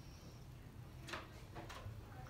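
Two short scuffing noises about half a second apart, over a low steady hum.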